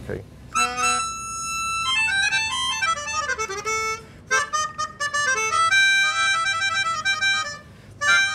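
Keyboard melodica playing a blues intro: a held note, then quick runs and chords of reedy notes, with a short break about four seconds in and a falling phrase near the end.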